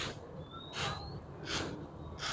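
A person's breathing close to the microphone: about three short breaths, under a second apart, with a thin rising whistle in the first second.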